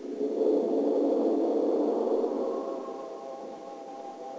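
Opening of a floor exercise routine's music: one long held chord with no beat, loud at first and slowly fading.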